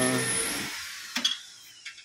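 A man's voice trails off at the start over a fading background whir. A sharp click comes about a second in, then a quick run of small clicks near the end, like hand tools on metal engine parts.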